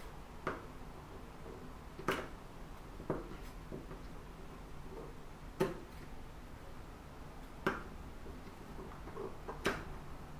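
Scissors snipping through folded layers of cotton sheet fabric, about six sharp separate snips spaced irregularly a second or two apart, with a few fainter ones between.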